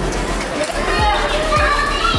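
Background music with a steady beat, with children's voices and chatter over it.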